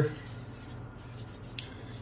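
Faint rustling of a paper seasoning packet as taco seasoning powder is shaken gently onto a casserole, with a few soft ticks.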